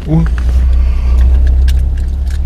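Car engine running, a steady low rumble heard from inside the cabin.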